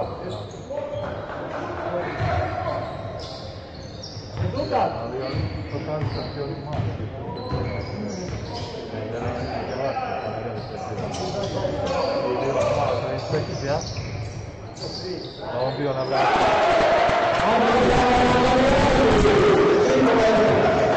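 A basketball bouncing on a hardwood court during live play in a large, echoing sports hall, with shouted voices. From about 16 seconds a louder, steady wash of voices and noise takes over.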